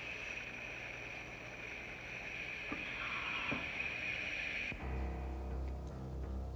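Anesthesia machine hissing steadily, then cut off abruptly nearly five seconds in and replaced by low, dark suspense score music.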